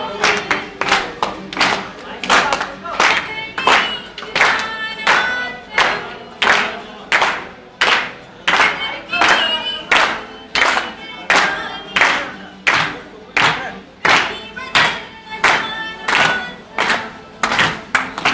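Live group singing to a strummed acoustic guitar, with sharp hand claps keeping a steady beat about twice a second.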